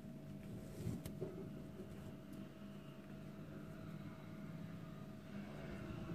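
Faint room tone with a steady electrical hum, plus soft rustling and a few light ticks from hands working a needle and yarn through crocheted fabric.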